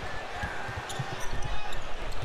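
A basketball being dribbled on a hardwood court: an uneven run of low thuds, a few a second, over steady arena background noise.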